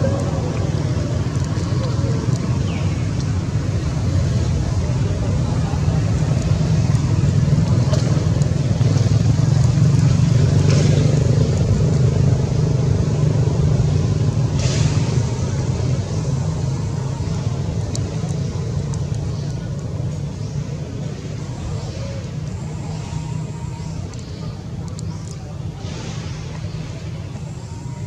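A loud, steady low rumble, like a running motor, that swells a little partway through and then slowly fades, with a few faint clicks.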